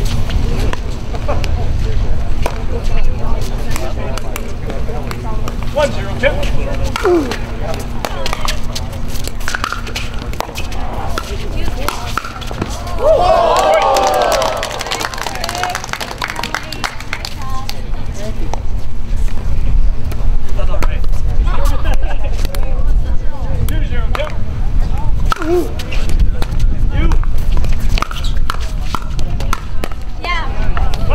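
Outdoor pickleball court ambience: frequent sharp pops of paddles striking plastic balls on the surrounding courts, with people talking in the background, loudest about halfway through, over a steady low rumble.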